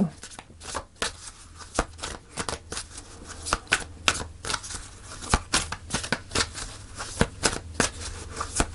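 Oracle card deck being shuffled by hand: a continuous run of irregular soft clicks and flicks as the cards slide against each other, over a low steady hum.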